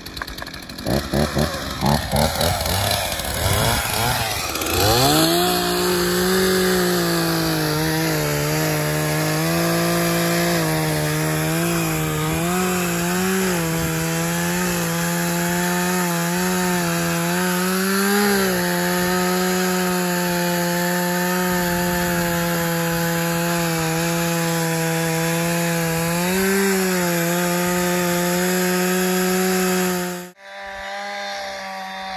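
Two-stroke chainsaw revving in quick rising blips over the first few seconds, then running at steady full throttle as it cuts into the trunk of a big dead ponderosa pine. Its pitch dips briefly a few times as the bar bogs under load.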